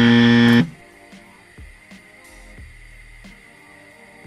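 A loud, flat game-show 'wrong answer' buzzer sound effect, about a second long, ending about half a second in. It marks a mistake. Quiet background music follows.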